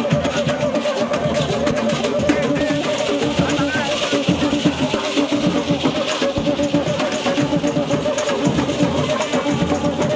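Batucada street band playing: a dense drum rhythm with a strummed banjo and men's voices singing, over a steady wavering high note.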